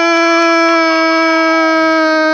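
A commentator's long goal cry, one loud "gooool" held on a single steady pitch.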